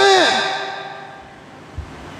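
A man's voice over a headset microphone finishes a word, and its sound fades away slowly in the hall, leaving a short pause of faint room noise. A soft low thump comes near the end.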